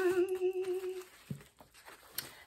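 A woman's voice holding a sung "ta-daaa" on one steady note, ending about a second in; a faint tap follows.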